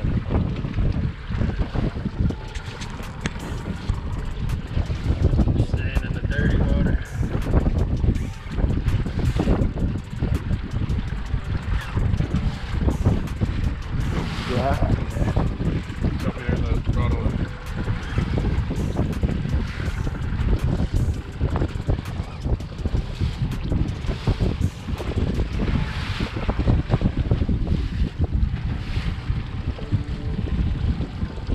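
Wind buffeting the microphone in uneven gusts over the wash of choppy water around a small boat at sea, with indistinct voices now and then.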